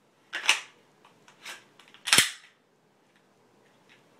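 Sharp metallic clicks of a semi-automatic pistol being handled during a magazine change: one click about half a second in, a faint one near the middle, and the loudest snap just after two seconds as the slide is run forward.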